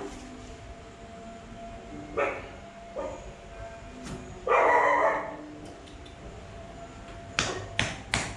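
A dog barking: short barks about two and three seconds in, then a louder, longer bark about halfway through. Near the end come two or three sharp knocks.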